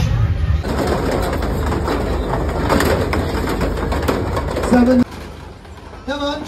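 Busy fairground crowd noise: many people chattering at once with clatter. It changes suddenly about half a second in and drops abruptly to a much quieter background about five seconds in.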